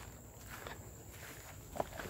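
Faint footsteps of a person walking, a few soft irregular steps.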